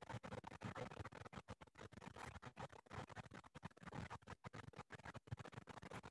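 Faint, irregular scratchy rustling with many small clicks close to the microphone, the sound of something being handled near it.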